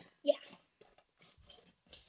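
A short spoken "yeah", then faint scattered clicks and rustles of a small cardboard blind box being handled before it is opened.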